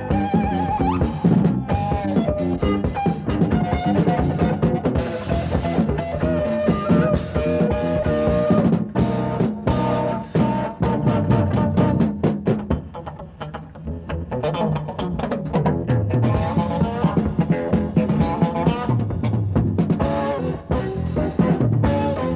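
Live rock band of electric guitar, bass guitar and drum kit playing an upbeat instrumental, dipping briefly quieter a little past the middle.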